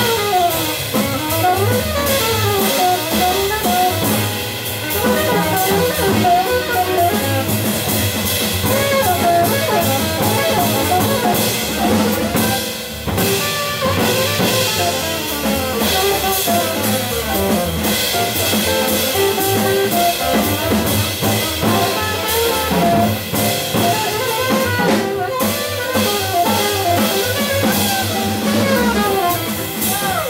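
Live small-group jazz: an alto saxophone solo of continuous running lines over plucked double bass and a drum kit with cymbals.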